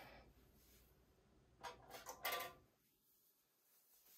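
Near silence: room tone, with two faint short rustles about two seconds in.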